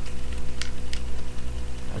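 Plastic toy parts being folded and handled, giving a light click or two, over a steady low hum.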